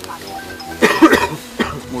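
A short cough about a second in, over faint background music.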